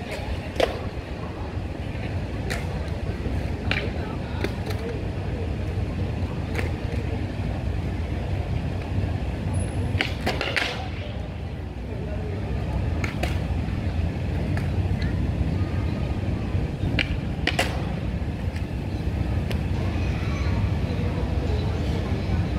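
Inline skate wheels rolling over stone paving tiles in a steady low rumble, with sharp clicks here and there as the skates tap and set down on the pavement.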